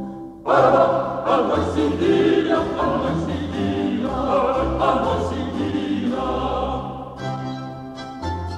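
Mixed chorus singing an early-Baroque Italian sacred oratorio chorus, entering loudly about half a second in after a short pause, with a baroque ensemble's low bass line beneath. Near the end the voices give way to the instruments.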